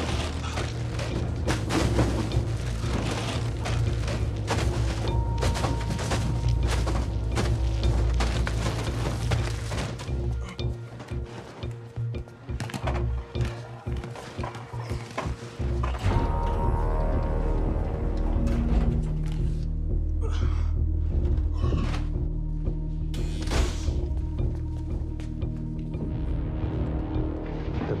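Tense film score music with low sustained notes. For the first ten seconds or so it runs over a dense run of clicks and knocks.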